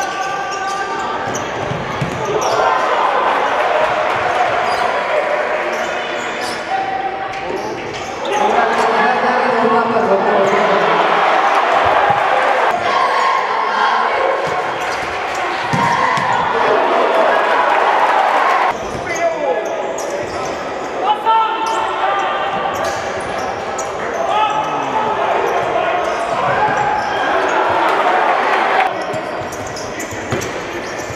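Futsal game sound in a large sports hall: a ball being kicked and bouncing on the court, with voices of players and spectators shouting throughout, all echoing in the hall.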